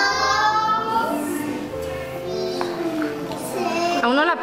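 A group of young children's voices singing out in long, drawn-out notes, several voices at once, as a class chanting a count aloud in a sing-song.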